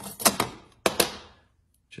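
Hard-cased digital angle gauge clacking against the metal camber block and being set down on the metal setup table: a few sharp clacks in two groups about half a second apart.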